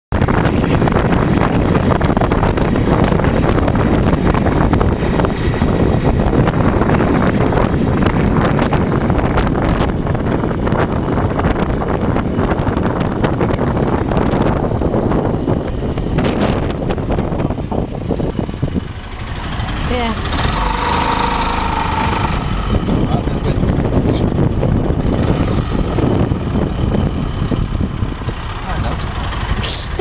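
Open dune buggy's engine running as it drives in traffic, with heavy rumbling wind noise on the microphone; the level dips briefly a little past halfway.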